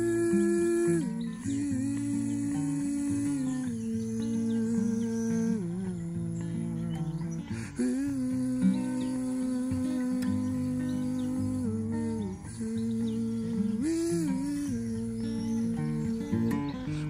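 A man humming a wordless melody in long held notes over steady acoustic guitar strumming.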